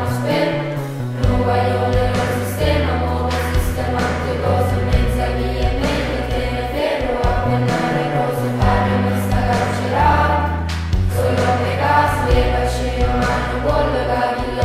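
A song sung in Neapolitan, the voices carried over held bass notes that change every second or two.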